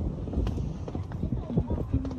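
Irregular light knocks and taps over a low rumble, with brief fragments of a voice.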